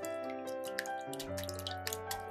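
A whisk beating raw eggs in a glass bowl, making quick, irregular wet clicks over steady piano-style background music.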